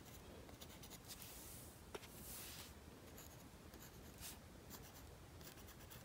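Faint, brief scratches of a fine paintbrush drawing black lines on a painted wooden disc, with one small click about two seconds in.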